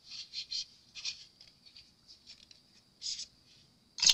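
Faint scratching and rustling as small craft tools are handled and swapped, a few short scrapes about a second apart.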